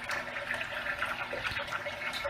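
Water trickling steadily into a small fish tank, running back down from the potted plant above in a pumped aquaponics loop.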